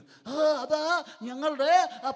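A man speaking into a microphone in a high voice that rises and falls.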